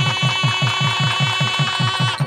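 Fast, even wedding drumming (getti melam) in the soundtrack for the tying of the thaali: about eight low, pitch-dropping drum strokes a second under a held high note.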